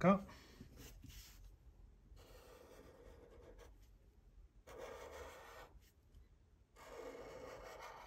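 Black Sharpie felt-tip marker drawing on paper: about four scratchy strokes of a second or so each, with short pauses between, as a beanie outline is traced.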